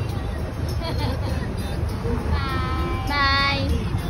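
A high-pitched voice sings or calls out one long held note, a little past halfway, over a steady low rumble.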